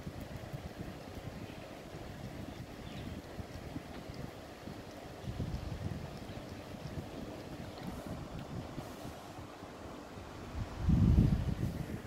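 Low, steady rumble of wind on the microphone, with a louder low burst of about a second near the end.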